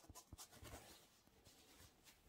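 Faint scratchy rustling and a few light clicks as cotton-gloved fingers handle a removed sneaker insole, its fabric top and foam underside; the clicks fall in the first half, and the rest is near silence.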